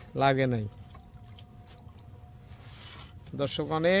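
A man speaks briefly at the start and again near the end. Between, a quiet stretch with a faint, steady, thin whine lasting about a second and a half.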